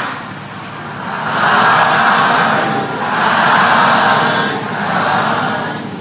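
A congregation of Buddhist worshippers calls out together in three long swells: the customary 'sadhu, sadhu, sadhu' of assent that closes a sermon.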